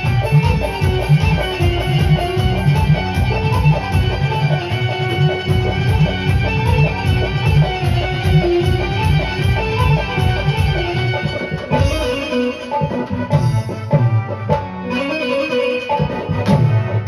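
Live Indian folk-pop band music: an Indian banjo (bulbul tarang) plays a wavering melody over a steady hand-drum beat with keyboard. The drums drop back about three-quarters of the way through.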